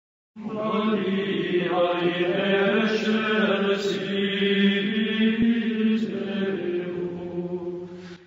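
Sung chant: voices holding a steady low drone note under a slowly moving melody. It starts abruptly just after the beginning and fades near the end.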